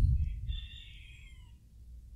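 A faint animal call lasting about a second, high and thin, sliding down slightly at its end, after a low bump right at the start.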